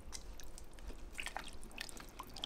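Spatula stirring chunky beef stew in a pressure cooker's inner pot: faint wet squelches and a few light taps and scrapes against the pot.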